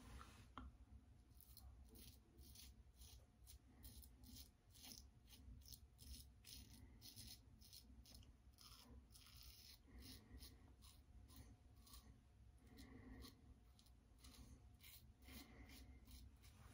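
Faint, short scrapes of a Leaf Shave Thorn safety razor cutting stubble through shaving cream, one stroke after another at an uneven pace.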